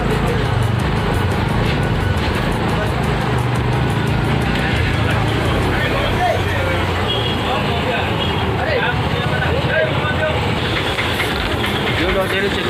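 Busy market ambience: background voices and chatter over the steady sound of passing road traffic, with music playing.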